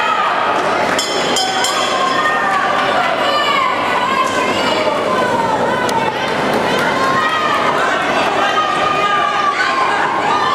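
Crowd of spectators at a boxing bout shouting and calling out, many voices overlapping in a steady din.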